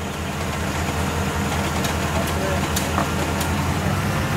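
Vehicle engine running steadily, a low even drone, with a few sharp clicks in the second half.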